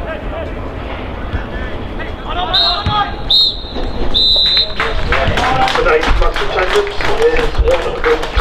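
Referee's whistle blowing for full time: two short blasts and then a longer third, from about two and a half seconds in. It is followed by shouting voices on the pitch.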